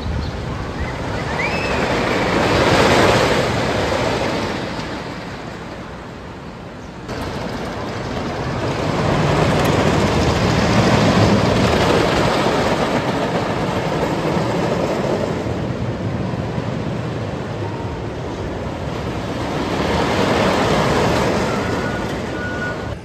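Wooden roller coaster train rolling along its track. The noise swells and fades as the train passes, three times.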